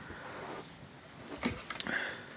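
Singer 6700C computerized sewing machine running briefly, followed about halfway through by a quick cluster of clicks and knocks.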